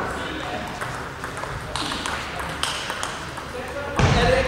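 Table tennis ball clicking off bats and the table in a rally, a few sharp hits spaced irregularly about a second apart, echoing in a large hall.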